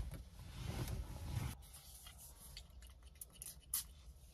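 Quiet sniffing at a glass perfume bottle held to the nose for about the first second and a half, then light handling sounds of the bottle and a paper strip, with a few small clicks and a sharper click near the end.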